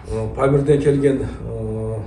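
A man speaking, his voice held on one steady pitch near the end like a drawn-out hesitation sound.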